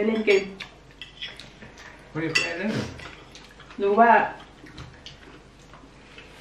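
Light clinks of cutlery against plates during a meal at a table, in between a few short bursts of Thai speech, which are the loudest sounds.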